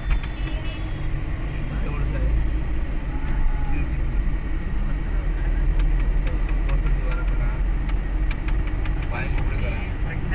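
Steady low rumble of a car's engine and tyres heard from inside the cabin while driving, with scattered light clicks.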